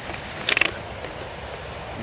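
Handheld camera being swung round, with a brief cluster of handling clicks and rustle about half a second in, over faint steady outdoor background noise.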